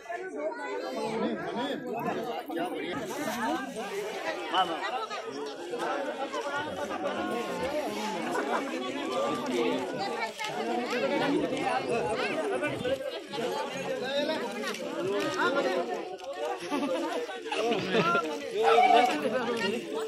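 Crowd chatter: many people talking at once in overlapping conversations.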